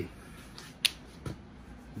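A single short, sharp click a little under a second in, then a fainter tick about half a second later, over quiet room tone.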